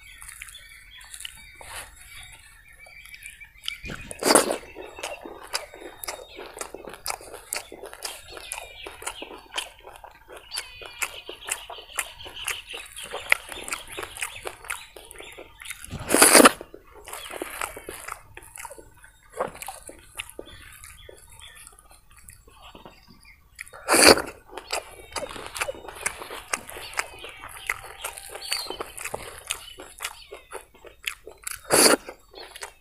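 Close-up chewing and wet mouth sounds of a man eating idli and vada by hand, with three louder bites, one about four seconds in, one in the middle and one later on. Birds chirp in the background.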